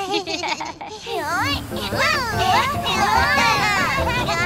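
Several high cartoon character voices squealing and chattering over one another without clear words, starting about a second in, over a low undertone.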